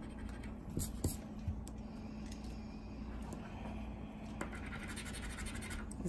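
A coin scratching the coating off a paper crossword scratch-off lottery ticket: a steady rasp with a couple of sharper ticks about a second in.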